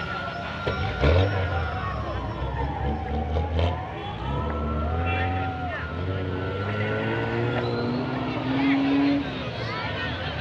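Off-road competition vehicle's engine running and revving, loudest about a second in. Over it, a camera drone hovering overhead gives a steady high whine that dips in pitch and comes back up, and spectators talk.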